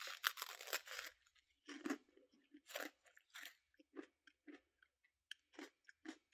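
A bite into a hard, crumbly freeze-dried ice cream sandwich, then crunchy chewing. The bite is the loudest crunch; the chews come about once or twice a second and grow fainter.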